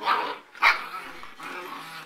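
Afghan hound puppies barking at play, two sharp barks within the first second, then quieter play noise.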